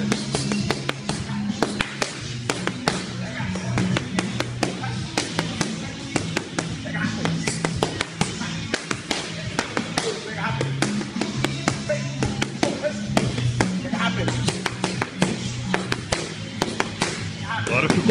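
Boxing gloves striking focus mitts in quick, irregular punches, over background music with a steady bass line.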